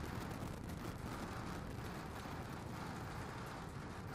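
SpaceX Starship's Super Heavy booster climbing on its 33 Raptor engines at full thrust: a steady, crackling rumble of rocket exhaust that eases slightly in level.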